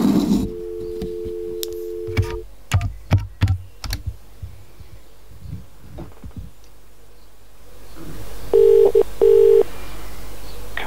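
Snom VoIP desk phone: a steady dial tone for about two seconds after the handset is lifted, then a quick run of clicks as keypad buttons are pressed to dial. Near the end, two short pulses of ringing tone, the British double ring, as the call connects to ring.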